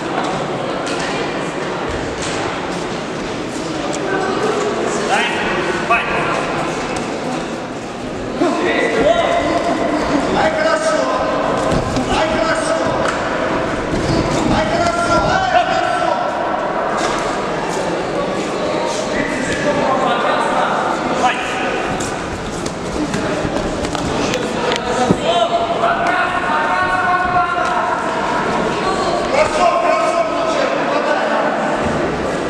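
Overlapping shouts from spectators and corner coaches in a large echoing sports hall during a kickboxing bout, growing louder about a third of the way in. Occasional thuds of kicks and punches landing on gloves and bodies.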